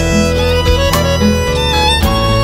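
Instrumental passage of a southern Italian folk band: a violin plays the melody over sustained bass notes and light percussion strokes.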